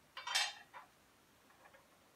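A straight edge being set down across the top of an LSA supercharger: a sharp clinking knock about half a second in, a lighter tap just after, and faint small handling noises near the end.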